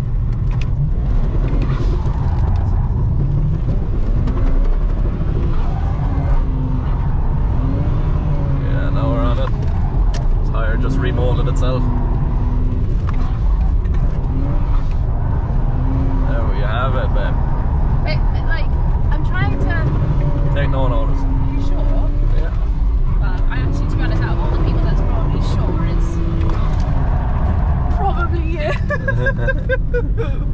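BMW 335's straight-six engine heard from inside the cabin, its revs rising and falling again and again while the car is drifted. Tyres squeal in warbling bursts at intervals as the grip breaks away.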